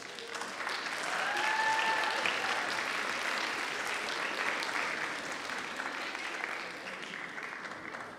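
Theatre audience applauding at the end of a stage performance, swelling about a second in and fading near the end. One short, high held call from the crowd is heard about a second in.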